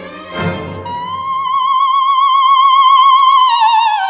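Orchestral chords, then a coloratura soprano voice enters about a second in and holds one long, loud high note that swells, before sliding down into a lower note with wide vibrato near the end.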